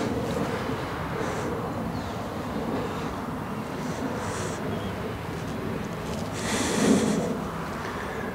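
Steady outdoor rumble of wind and a distant engine, swelling briefly about six and a half seconds in.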